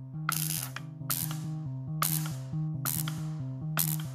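Spark-gap radio transmitter firing a series of electric sparks as its Morse key is pressed: five short bursts of sparking, about one a second, each fading quickly.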